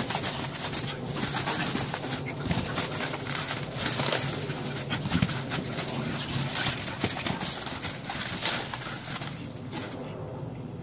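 Bull terrier running around on a trampoline: its paws pattering and thumping on the springy mat in quick, irregular steps, which die down near the end as it sits.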